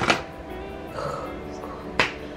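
Soft background music with steady held notes, and a short sharp breath right at the start.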